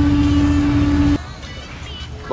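A horn sounding one steady note over loud low rumbling noise, cutting off abruptly after about a second.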